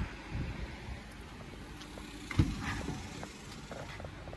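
Rustling and handling noise of someone moving around a car's seats with a phone camera, with small clicks and one dull thump a little past halfway.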